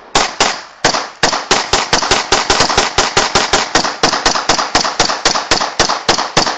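A rapid string of loud, sharp bangs, like gunfire or firecrackers, each with a short echoing tail. The first few come about every third of a second, then they quicken to about five a second and keep going without a break.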